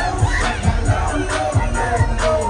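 Hip-hop track played loud over an arena sound system, with a heavy kick drum about three beats a second, and a crowd shouting and cheering along.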